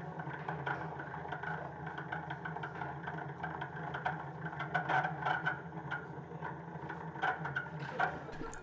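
A steady low machine hum with faint scattered clicks and clatter.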